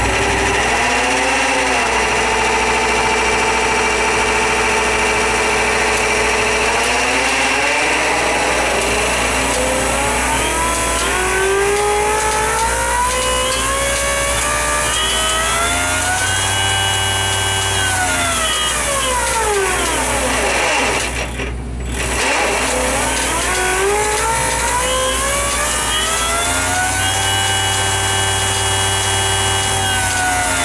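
MSD Pro-Mag 44 magneto test stand running and firing a rail of spark plugs. Its whine holds steady at first, rises in pitch, then holds. It falls almost to a stop a little past the middle, then rises again and holds near the end.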